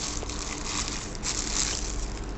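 Plastic packaging wrap rustling and crinkling as it is handled and pulled off a headlight lens, loudest about a second and a half in.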